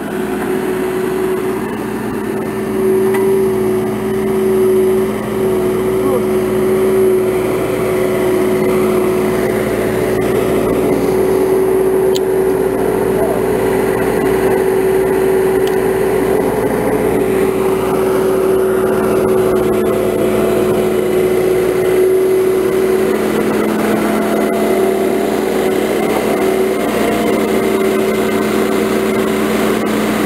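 Skid-steer loader's engine running at a steady throttle while it works a hydraulic tree spade, a constant loud drone that does not change.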